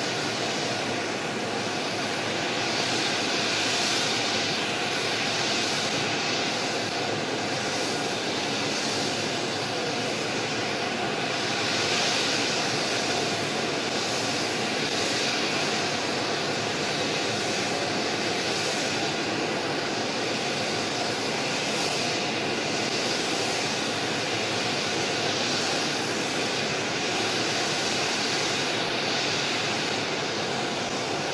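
Jet aircraft engines running, a steady rushing roar with a faint continuous whine.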